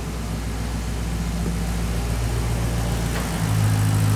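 Maserati Quattroporte's 4.2-litre V8 idling steadily at running temperature, with an engine-flush additive circulating in the oil. It grows a little louder about three seconds in.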